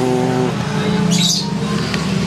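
A bird chirps briefly about a second in, over a steady held tone with overtones that runs throughout.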